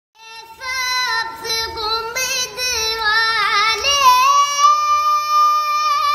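A boy singing solo in a high voice, unaccompanied, with quick ornamented turns and then a long held note from about four seconds in.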